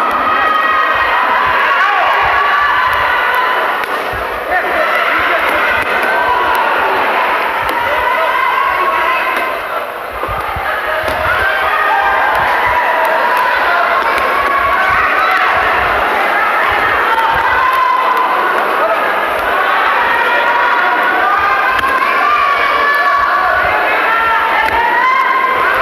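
Crowd of spectators shouting and cheering throughout a boxing bout, many voices overlapping with no single clear speaker, easing off briefly about halfway through.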